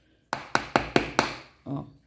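Metal spoon knocking against the side of a plastic bowl of damp corn-flake meal (flocão), about five sharp taps in under a second.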